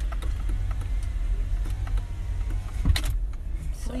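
Low, steady road rumble inside a moving car's cabin, with scattered small clicks and a sharper knock about three seconds in.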